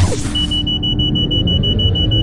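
Intro-animation sound effects: a sudden loud hit that carries into a dense low rumble, with a high, fast-pulsing alarm-like beep running over it from about a third of a second in.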